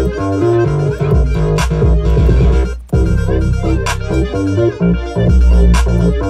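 Electronic trap-style beat with heavy 808 bass, synth notes and a sharp hit about every two seconds. The beat cuts out briefly just before three seconds in, then drops back in.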